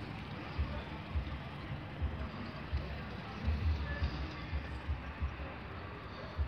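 Wind buffeting the microphone in irregular gusts over a steady outdoor hiss.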